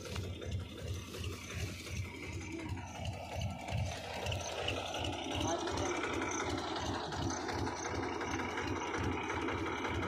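Soybean threshing machine running steadily, with a regular low pulse about three or four times a second.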